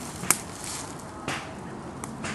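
Two knocks on wood about a second apart, the first sharp and loud, the second duller; they are taken for a woodpecker.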